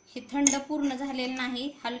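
Steel spoon clinking against a stainless steel bowl while khoa is stirred into a milk mixture, with one sharp clink about half a second in.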